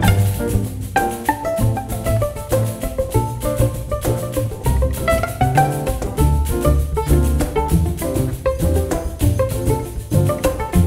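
Jazz chamber ensemble of violin, viola, two cellos, piano, drums and hand percussion playing a rhythmic passage, with busy percussion strikes under a moving melody and low bass notes. The full ensemble comes in abruptly right at the start.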